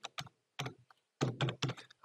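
Typing on a computer keyboard: a couple of spaced key clicks, then a quicker run of keystrokes in the second second.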